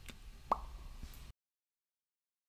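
Hand handling a smartphone: a faint click, then a louder sharp tap about half a second in and a weaker click near one second, after which the sound cuts off abruptly into digital silence as the recording stops.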